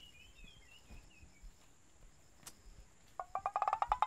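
Faint bird chirping in the background. About three seconds in, a fast run of about a dozen short plucked notes climbs in pitch, a comic musical sound cue.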